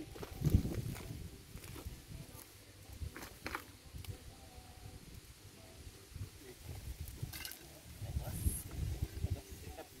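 Hoe striking and scraping dry, loose soil while a trench is dug: scattered dull thuds with a few sharp clicks, and a quicker run of strokes in the last few seconds.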